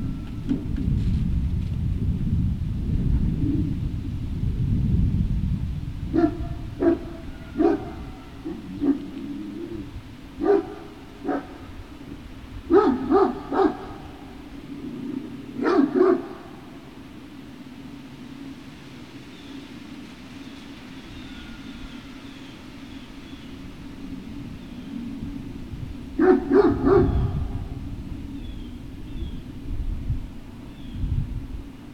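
Great Danes barking: single short barks and quick runs of two or three, in bursts from about six seconds in to about sixteen seconds, then a short flurry near the end. A low rumble fills the first few seconds.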